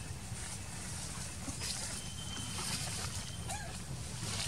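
Dry leaves rustling and crackling as monkeys move over a leaf-littered ground, over a steady low outdoor rumble.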